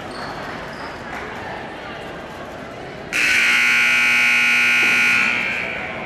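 Gymnasium scoreboard horn sounding one steady, loud buzz lasting about two seconds, starting about three seconds in, over the hubbub of a crowd in a gym. It signals the end of a timeout as the players leave their huddles.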